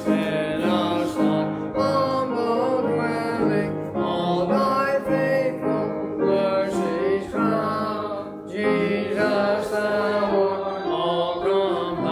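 Church congregation singing a hymn to instrumental accompaniment, with the song leader beating time.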